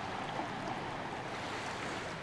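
Small waves lapping and washing onto a sandy shore, a steady wash of water.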